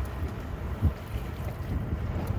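Wind buffeting the microphone as a low, uneven rumble, with one short thump a little under a second in.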